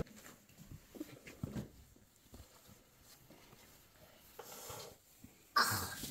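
Quiet fabric rustling and soft handling as a child's cotton T-shirt is pulled on over her head, with a short, louder noisy burst near the end.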